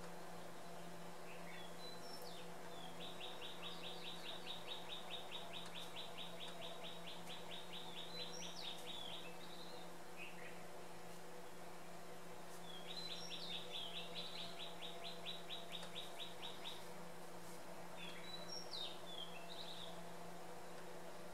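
A songbird singing: two long, even trills of rapid repeated notes, each several seconds long and a few seconds apart, with short chirps before and after. A steady low hum runs underneath.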